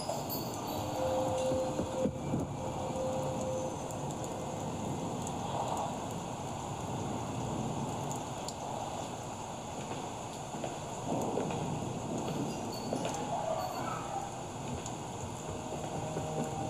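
Ambient sound design of a music-video teaser: a steady hiss with a faint held tone about one to four seconds in, and a few soft swells later on.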